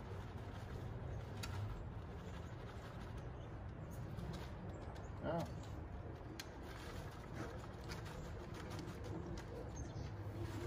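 Faint rustling and light ticks of wood shavings being poured from a cardboard box into a small paper bag, over a low steady hum. A brief low call sounds about five seconds in.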